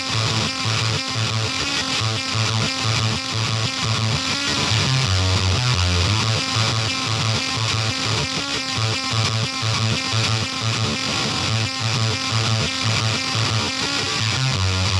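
Electric guitar played through the Damnation Audio Ugly Twin gain pedal, most likely its hybrid silicon/germanium fuzz, giving a dense, gritty tone. The riff is built on a low note that repeats steadily throughout.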